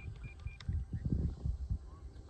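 A few short high electronic beeps in quick succession, of the kind an RC radio transmitter gives, ending about half a second in. Then low rumbling gusts of wind on the microphone, the loudest part.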